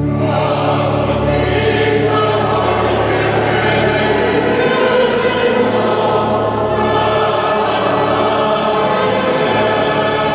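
A choir singing a sacred hymn over organ accompaniment. The voices come in at the start over held low organ notes.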